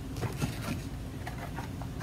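Faint light clicks and rustling as a plastic anatomical model on its base is picked up and handled.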